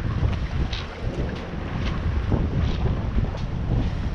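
Wind buffeting the camera microphone: a loud, gusty low rumble that swells and dips, with a few faint ticks above it.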